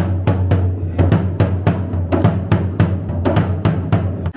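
Large rope-tensioned double-headed dhol beaten with a stick in a quick, steady rhythm of about five strokes a second, with the drum's deep boom ringing on continuously beneath the strokes.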